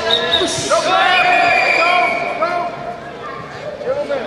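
Several voices shouting over one another in a large hall, loudest in the first two seconds and then tailing off.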